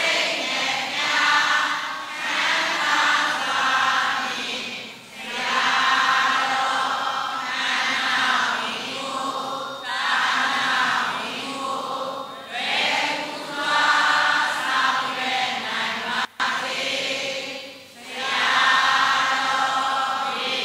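A large Buddhist congregation chanting together in unison. The recitation comes in phrases a few seconds long with short pauses for breath between them, and the sound briefly cuts out about sixteen seconds in.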